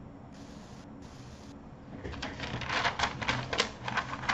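Computer keyboard typing: a quick, irregular run of key clicks that starts about halfway in.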